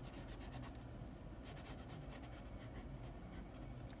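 Pencil scratching on sketchbook paper in quick, short, repeated strokes, faint.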